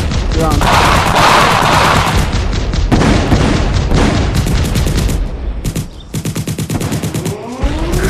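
Battle sound effect of rapid, continuous machine-gun fire, dipping briefly about six seconds in before picking up again.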